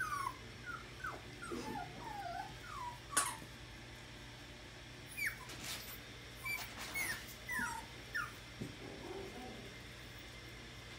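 Seven-week-old puppies whimpering: a string of short, high whines, each falling in pitch, with a sharp click about three seconds in.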